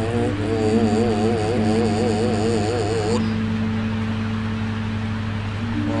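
Javanese gamelan music: a male singer holds long, wavering notes for about the first three seconds over steady sustained instrumental tones, after which only the held tones go on. A steady low hum runs underneath.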